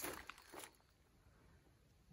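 A few soft footsteps on a dry, leaf-littered dirt trail in the first half-second or so, then near silence.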